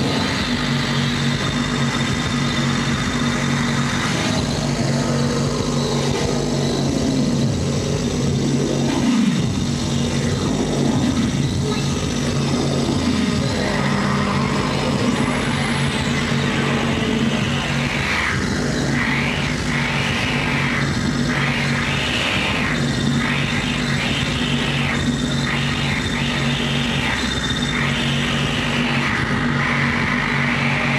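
Live harsh noise music from a tabletop electronics rig: a dense, loud wall of noise over a steady low drone. Several falling pitch sweeps come through in the first half, and in the second half a swelling pulse repeats about once a second.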